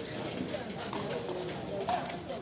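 Background chatter of voices, with a sharp knock near the end from a woven sepak takraw ball being kicked, and a few fainter knocks before it.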